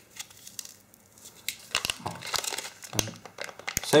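A plastic packaging bag crinkling and crackling in the hands as it is handled and opened. It comes in irregular small crackles from about a second and a half in.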